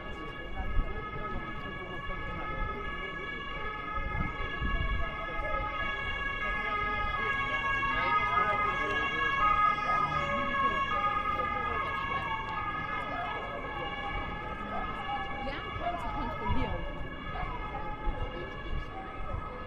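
A steady drone of several high tones held at one pitch, growing louder toward the middle and easing off again. It sounds over scattered voices of passers-by.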